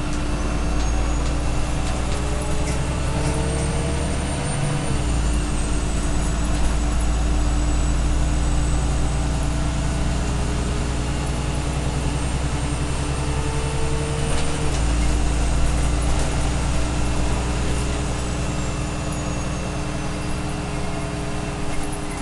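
Cabin noise inside a moving Irisbus Citelis Line city bus: a steady low diesel engine drone with a constant hum. A pitch rises and then drops sharply twice, about five seconds in and again near fifteen seconds, typical of the automatic gearbox changing up as the bus gathers speed.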